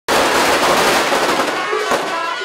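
A string of firecrackers crackling densely and loudly. About one and a half seconds in the crackle thins and Chinese wind instruments, the sheng mouth organ among them, come through with held notes.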